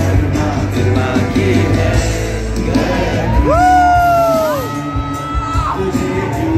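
Live music with singing, played loud over a stadium sound system, with a crowd yelling and whooping. About three and a half seconds in, a single voice holds a long high note that falls away, then a second, higher one.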